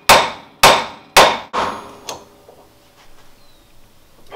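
Big hammer striking a Jeep's stuck steering pitman arm, which is under tension from a pitman arm puller, to shock it loose: about four hard metal-on-metal blows half a second apart, each ringing briefly, the last one weaker.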